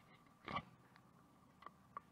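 Near silence broken by handling of a clear plastic tackle box: a soft knock about half a second in, then two faint sharp clicks near the end as its latches are worked.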